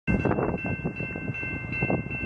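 Railway crossing warning bell ringing in a steady rapid rhythm, about two to three strokes a second, its ringing tone held between strokes: the crossing signal warning of an approaching train. Cars drive across the tracks under it.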